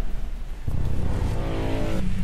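Dramatic film score sound design: a deep rumble that swells about two thirds of a second in, with a rising drone building over it in the second half.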